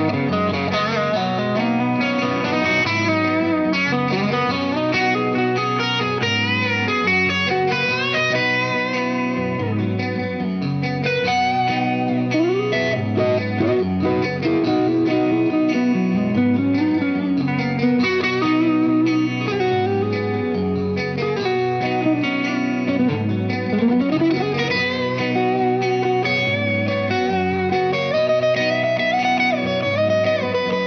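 Fender electric guitar played through an amplifier: melodic single-note lines mixed with chords, with several string bends.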